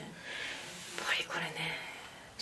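Soft, breathy speech: a few quiet murmured words, a little louder about a second in.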